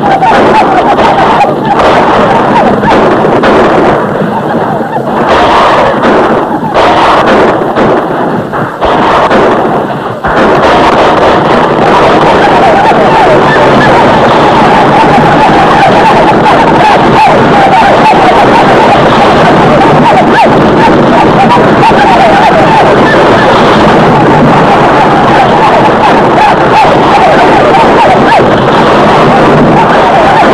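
Loud, dense din of a mounted battle: many horses galloping, with gunfire and yelling riders. Broken by short gaps and sharp cracks in the first ten seconds, then continuous.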